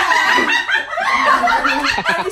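Several people laughing loudly together.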